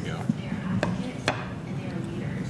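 Metal pizza server clicking against the plate twice as a slice is set down: two sharp clicks about half a second apart, over a low steady hum.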